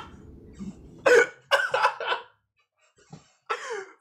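A man laughing hard in several short, breathy bursts, with a pause before a last burst near the end.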